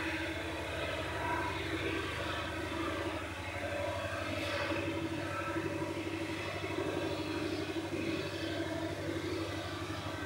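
A steady low hum with a continuous droning rumble over it, without breaks or sharp knocks.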